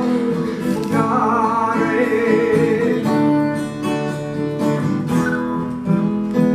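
Acoustic guitar strummed in chords, accompanying a song.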